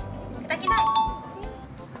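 A two-note chime, like a doorbell ding-dong, sounds about half a second in and rings for nearly a second, over light background music.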